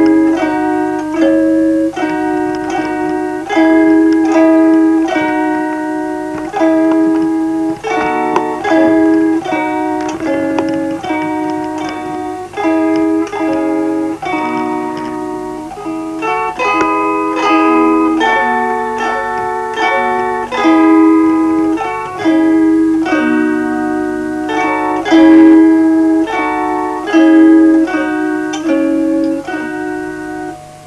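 Lithuanian kanklės, a wooden plucked board zither, playing a simple folk melody, its strings plucked one note at a time at about two notes a second. A faint steady low hum runs underneath.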